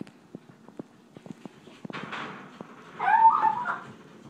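A short, wavering squeal from the oven about three seconds in, lasting under a second, with faint clicks and taps before it.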